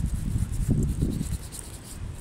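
Hands rubbing briskly together against the cold, a rough, rasping friction that dies away about one and a half seconds in.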